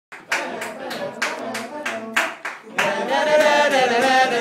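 Steel band members clap a quick, steady beat. About three seconds in, a group of voices starts singing the tune of a pan part together, unaccompanied, over occasional claps.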